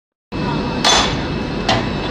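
Two sharp metal clanks, each ringing briefly and about a second apart, as the discharge hatch on a live-fish tanker truck's tank is worked open. They sound over a steady rushing noise.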